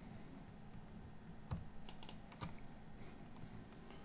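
A few faint, separate computer clicks, as from a mouse or keys, over a low steady hum.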